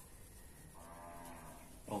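A faint, steady low-pitched call held for about a second in the middle.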